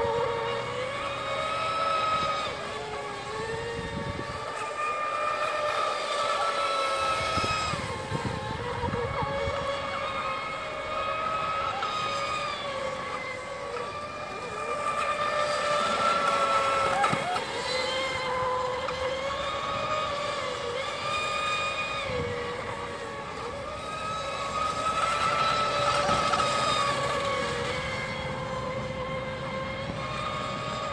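Radio-controlled racing boats running at full speed on the water, a high motor whine of several tones that wavers a little in pitch and grows louder and softer as the boats pass.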